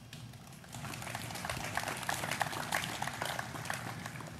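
Audience applauding: clapping starts a little under a second in and carries on steadily.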